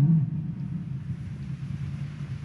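A pause in the reading filled by a steady low rumble of background room noise, with the tail of the reader's voice just at the start.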